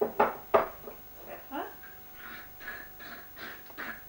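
A baby making short vocal sounds: coos and little squeals, some rising in pitch. These are mixed with short, scratchy shakes of a salt or pepper shaker being sprinkled over her.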